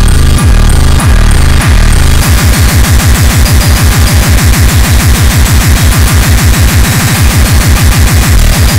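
Speedcore electronic music at about 390 BPM, very loud and dense. A distorted kick drum hits about six or seven times a second, over a harsh, noisy upper layer. In the first two seconds the kicks give way to a choppier stretch of held bass notes, then the rapid kicks resume.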